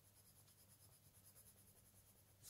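Very faint scratching of a soft coloured pencil shading on sketchbook paper, barely above room tone.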